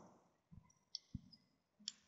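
Near silence with a few faint clicks from a computer mouse.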